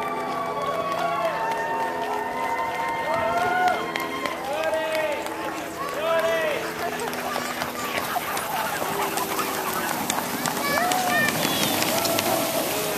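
Excited sled dogs yelping and barking in repeated short rising-and-falling calls as a team runs past, with spectators' voices mixed in.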